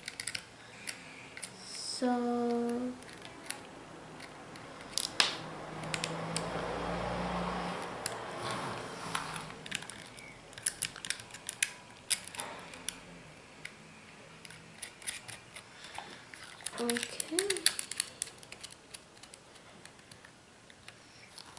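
Small metal kit parts clicking and ticking as a nut and screw are fitted by hand to a toy car's frame, with rustling handling noise in the middle. A short hummed voice sound comes about two seconds in and another near the end.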